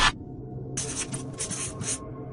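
A scratchy, flickering hiss lasting a little over a second, starting just under a second in, over a faint background music bed. The tail of a louder burst of noise ends right at the start.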